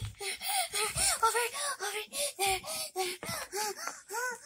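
A child's high-pitched voice making a fast string of short, wordless syllables.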